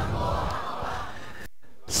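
A roomful of students reciting a Japanese phrase together in unison, faint and blurred, fading out after about a second and a half.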